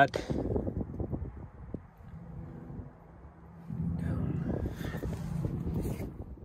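A rubber serpentine belt being fed by hand around a truck's fan and pulleys: light rubbing and knocking of the belt and hand against the parts, over a low steady hum that grows louder after about four seconds.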